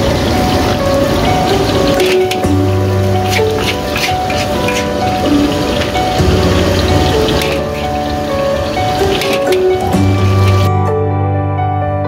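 Background music with steady melodic notes, over the sizzle of a hot wok and a metal spatula scraping and clicking on the steel as fried rice is scooped onto a plate. The cooking noise stops near the end, leaving only the music.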